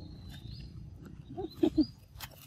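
Young macaques giving three short, quick calls about a second and a half in, as they squabble over a mango held out by hand.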